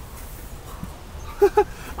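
Two short, loud vocal calls in quick succession about one and a half seconds in, over a low steady rumble.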